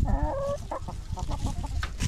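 A flock of hens clucking: one drawn-out call in the first half second, then a quick run of short clucks, over a low rumbling background.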